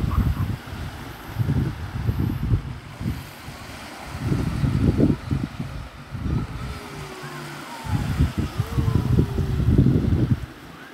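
Gusty wind buffeting the microphone in uneven surges every couple of seconds, over a faint wash of water on the shore. A few faint falling whistles come through the noise.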